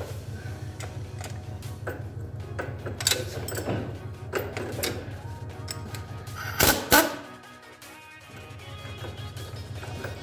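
A radio playing music in the background of a workshop, over scattered clicks and clinks of tools on metal. A little before three-quarters of the way through come two loud, sharp knocks close together.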